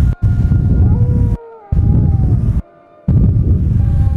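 Wind buffeting the microphone in loud, low, rumbling gusts of about a second each, starting and stopping abruptly, over background music of held tones.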